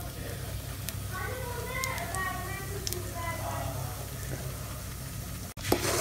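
Faint voices in the background over a steady low hum, with a few light clicks. The sound drops out abruptly near the end.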